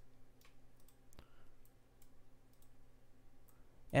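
Faint computer mouse clicks, a handful spread unevenly over a few seconds, over a faint steady low hum.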